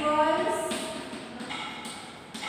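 A woman's voice drawing out a sound in the first half second or so, against light scratching of chalk writing on a chalkboard, with a higher pitched tone near the end.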